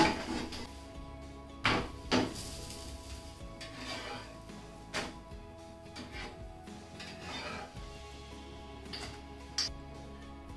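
Background music with steady sustained tones, over a few sharp clanks of a spatula against a frying pan on a gas stove, the loudest at the start and about two seconds in.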